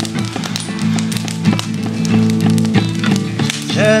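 Acoustic guitar strummed in a steady rhythm with sharp percussive taps, an instrumental gap in the song; a man's singing voice comes back in at the very end.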